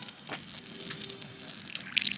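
Water being poured from a plastic bottle and splashing and dripping onto a car tyre's tread over a puncture, with a hiss of air escaping from the hole.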